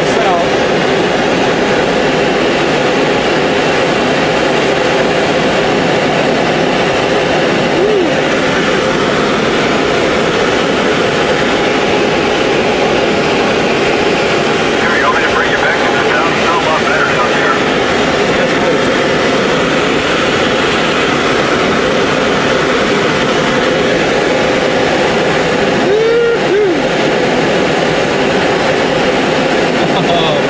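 Steady rush of air around a glider's canopy during aerotow, mixed with the drone of the tow plane's engine ahead.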